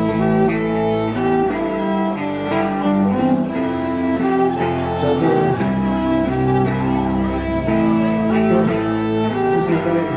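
Live band music in a slow, sparse passage: a sustained melody moving note by note over low held notes, with only occasional cymbal strokes from the drum kit.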